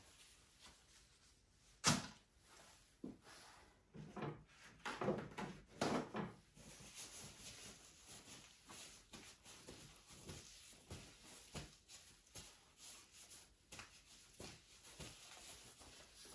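Quiet handling sounds: one sharp knock about two seconds in, a few smaller knocks and rustles a few seconds later, then faint scattered ticks.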